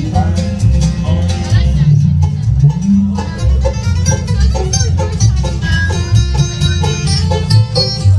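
A live bluegrass band plays an instrumental break, with no singing: banjo, fiddle, acoustic guitar and upright bass, the bass keeping a steady beat.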